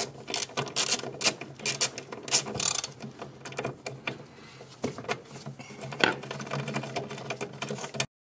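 Hand ratchet with a socket on an extension clicking in quick, irregular runs as bolts are turned out of a car's plastic cowl panel. The clicks come thickest in the first few seconds, then in shorter spurts, over a low steady hum.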